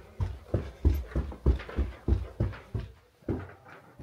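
A person climbing carpeted stairs: dull footsteps about three a second, easing off near the end as the top is reached.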